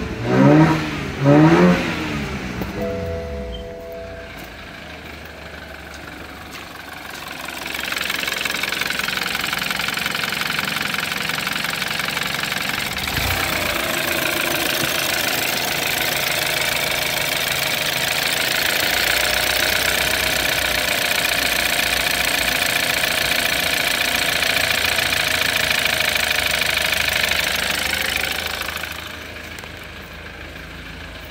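BMW N20 2.0-litre turbocharged four-cylinder petrol engine revved twice in quick blips at the start, then idling. From about eight seconds in it is much louder and busier, heard close up in the open engine bay, until it fades near the end.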